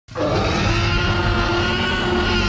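Loud, sustained roar-like sound effect, starting abruptly and holding steady with a deep rumble underneath.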